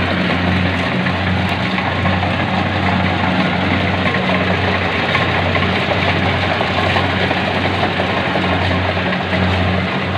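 Kubota rice combine harvester running while it cuts and threshes rice: a steady low diesel engine drone under a loud, even rushing clatter from the machine's cutting and threshing works.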